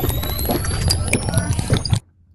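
An edited-in comic sound effect: dense crackling and clicking over a low rumble, with a thin rising whistle, cutting off suddenly at the end.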